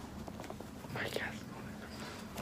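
Quiet room with light clicks of a phone being handled and a brief soft whisper about a second in.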